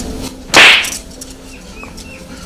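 A single sharp whip-crack sound effect about half a second in, starting suddenly and fading quickly.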